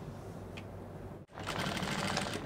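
A low steady hum, then after an abrupt break about a second in, an industrial single-needle sewing machine runs, stitching bias binding onto a neckline.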